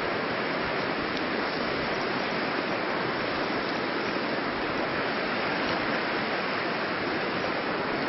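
Steady, even rush of a river's running water.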